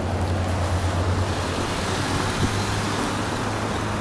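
Low, steady engine drone of a motor vehicle with road noise, swelling in the first second and again about two and a half seconds in.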